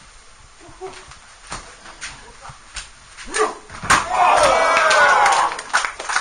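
Scattered thuds of wrestlers moving on a stage mat, then a heavy body slam onto the mat about four seconds in. Loud shouting and cheering voices follow for nearly two seconds.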